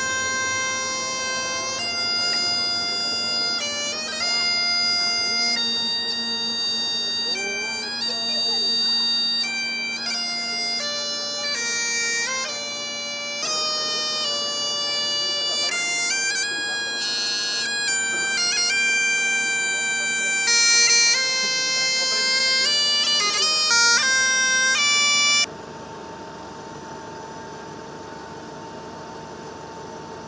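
Great Highland bagpipe playing a tune, with melody notes stepping over its steady drones. It cuts off abruptly about 25 seconds in, giving way to quieter city street traffic noise.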